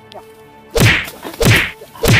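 Loud whacks of blows landing: two about two-thirds of a second apart, with a third right at the end. Each is a sharp smack with a deep thud under it.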